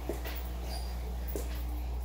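A few short animal calls in a pet store, including a brief high chirp, over a steady low hum.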